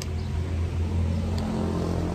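A motor vehicle engine running close by: a steady low hum that grows louder about a second in.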